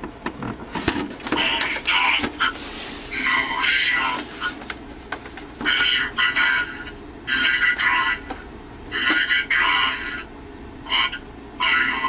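Soundwave helmet's built-in speaker playing Soundwave's robotic voice lines: short, tinny phrases separated by pauses.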